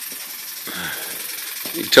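Small model 'Wobbler' oscillating-cylinder engine running on low-pressure compressed air, making a fast, steady ticking clatter.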